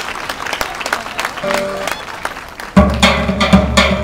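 Audience noise with scattered clapping, then about three seconds in Greek folk dance music comes in suddenly and loudly, driven by a steady drum beat.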